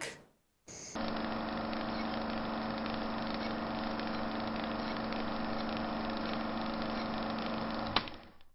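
A steady, unchanging drone of low held tones. It begins about a second in, after a brief silence and a short blip, and cuts off suddenly at the end.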